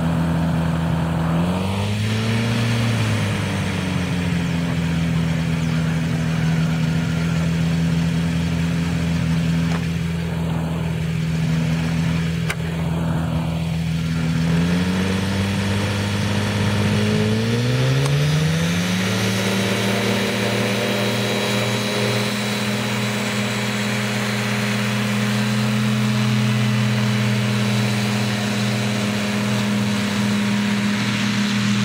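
Paramotor trike's engine and propeller running steadily, with a brief rise in pitch about two seconds in. Around fifteen seconds in it is throttled up to a higher, steady pitch for the takeoff run as the wing is pulled up overhead.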